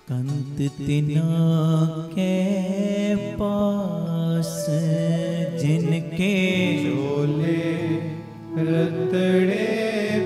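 Sikh kirtan: male voices singing a Gurbani shabad over steady harmonium-like held notes, with a few short drum strokes. The music comes in sharply at the start, after a short pause.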